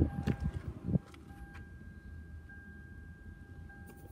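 A few dull knocks and bumps in the first second, the handheld camera being moved around inside the minivan. After that comes a faint steady hum with a thin, high, steady tone.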